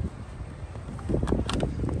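Wind buffeting the microphone, with a few short clicks and rustles of a cardboard box lid being opened in the second half.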